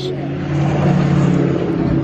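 Engine of a 1970 Chevrolet Camaro running steadily, heard from inside the car, getting louder about half a second in.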